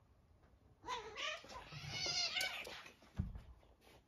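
A cat lets out a wavering yowl lasting about two seconds while scuffling with another cat, then a short dull thump comes a little after three seconds in.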